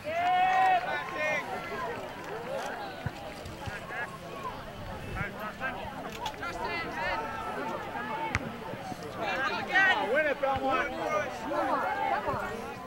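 Voices calling and shouting across a soccer field, unintelligible and overlapping, with a loud call right at the start and another burst of shouting near the end. A single sharp knock stands out about eight seconds in.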